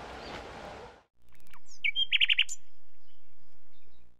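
Bird-chirp sound effect: a quick trill of bright, repeated tweets about two seconds in, with a few higher whistled glides around it. Before that there is outdoor background hiss, which cuts out about a second in.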